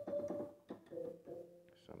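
Korg Triton keyboard playing a few short notes on a plucked guitar patch, one at the start and several more under a second later, each ringing briefly and fading.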